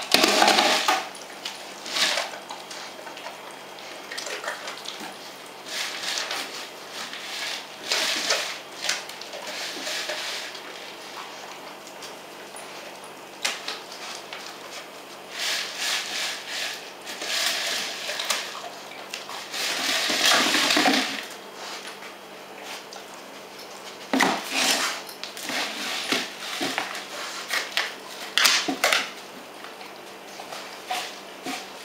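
A tube toy knocking, rolling and clattering on the floor as a German Shepherd noses and paws at it, in irregular bouts of knocks and scrapes with short pauses between.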